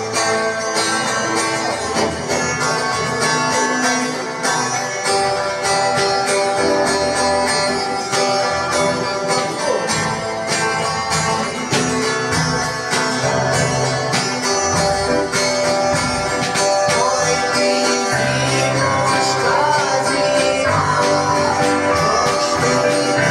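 A small rock band playing live: electric guitar over a steady drum-kit beat, with keyboard, an instrumental passage without words.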